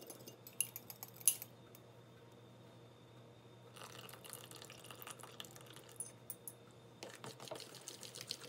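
Melted butter poured from a small glass bowl into a mixing bowl of banana and egg batter, after a few light glass clinks about a second in. Fork stirring the batter near the end.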